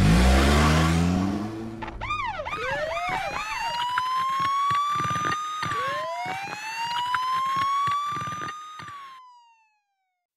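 Cartoon police siren sound effect: it opens with a loud rush and a rising engine rev, breaks into a quick up-and-down yelp, then gives two long wails that each climb for about three seconds and drop away. It fades out just before the end.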